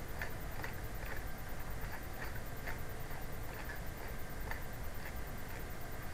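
Computer mouse scroll wheel clicking, a faint tick about twice a second, over a low steady hum.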